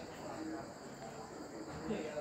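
Faint, indistinct voices in the background over a steady high-pitched tone and hiss.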